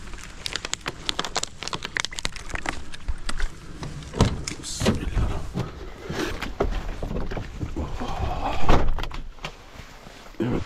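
Climbing into a truck cab: a run of clicks, knocks and rustles as the cab door is handled and he steps up inside, with the loudest knock near the end, fitting the cab door shutting.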